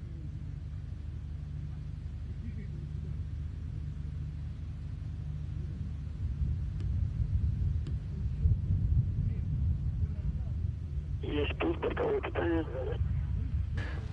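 Low, uneven rumble of the launch-pad background noise before engine ignition, growing louder about six seconds in. Near the end there is a short voice over a radio line.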